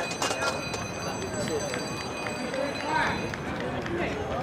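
Indistinct voices of people talking at a track meet, with a couple of sharp clicks right at the start. A set of faint, steady high-pitched tones runs underneath and stops about three seconds in.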